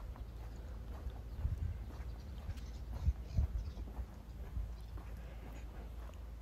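Footsteps of a person walking on a paved street, uneven knocks with the loudest about a second and a half in and just after three seconds, over a steady low rumble.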